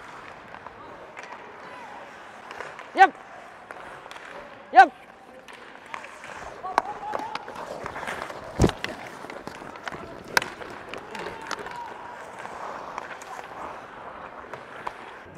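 Ice hockey play on the rink: skate blades scraping and sticks clicking on the puck and ice, with two short shouts about three and five seconds in. A heavy thud lands about eight and a half seconds in, and a sharp stick crack follows about two seconds later.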